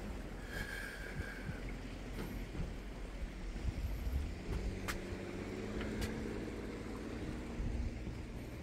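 Outdoor walking ambience: wind rumbling on the microphone, with irregular footsteps on a footbridge deck and a few sharp clicks. A faint steady drone joins about halfway.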